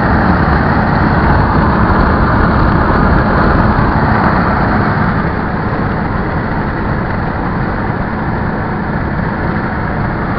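Steady road and wind noise of a vehicle travelling at highway speed, heard from inside the cab, easing slightly about halfway through.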